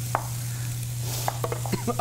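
Shredded Brussels sprouts sizzling faintly in a stainless steel sauté pan while a spatula clicks and scrapes against the pan, once just after the start and several times in the second second, over a steady low hum.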